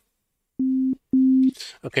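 Two short notes at the same low pitch, a dull sine-wave tone from a software synth played from a MIDI keyboard controller; the second note is a little louder than the first.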